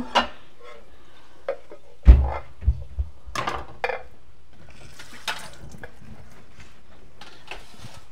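Ceramic dinner plates knocking and clinking as a stack is taken down from a kitchen cupboard and handled, with a heavier knock about two seconds in and lighter clinks after.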